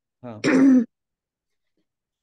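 A person clears their throat once, briefly, a little after the start.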